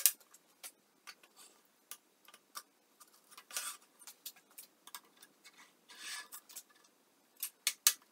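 Metal CNC parts being handled on a steel welding table. A sharp knock at the start as a ball screw is set down, then scattered clicks and two short scraping slides of aluminium rail and plate. A quick run of clicks near the end as bearing blocks are fitted.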